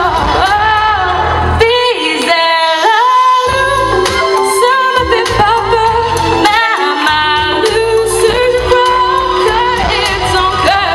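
A girl singing a French song solo into a microphone, amplified through a PA system, her voice moving between held notes with slides in pitch.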